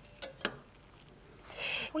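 Two light clicks of a metal spoon knocking against a pot or bowl, about a quarter and half a second in. A short hiss follows near the end.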